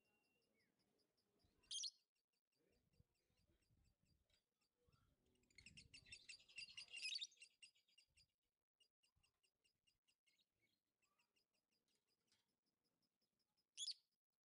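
Lovebird calling: a short, sharp high chirp about two seconds in, a couple of seconds of rapid chattering around the middle, and another sharp chirp at the end.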